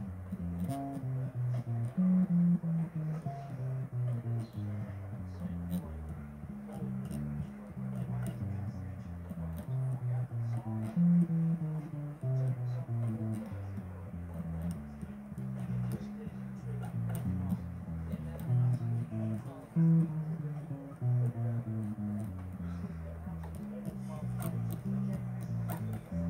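Electric bass guitar played solo: a continuous line of plucked single low notes, changing pitch every half second or so.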